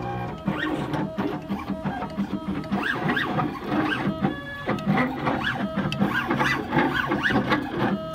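Stepper motors of a rotary engraving machine whining in quick rising-and-falling pitch sweeps as the cutter head moves back and forth, engraving lettering into an anodized aluminum nameplate.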